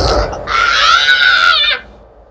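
A low thud, then a high-pitched, squeaky cartoon laugh held for about a second that stops abruptly.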